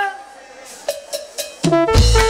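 The tail of a held shouted call, then three sharp evenly spaced clicks like a count-in, and about one and a half seconds in a live cumbia band comes in loud with electric bass and percussion.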